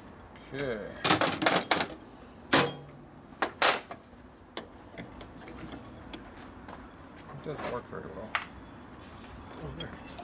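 Sharp metal clinks and clacks of motorcycle clutch plates being fitted over the studs of a clutch hub and handled with a brass punch. There is a quick cluster of clinks about one to two seconds in, then single clinks scattered through the rest.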